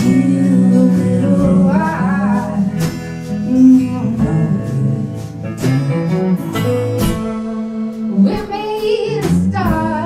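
A woman singing with acoustic guitar accompaniment. Sung phrases come about two seconds in and again near the end, over steady guitar strumming.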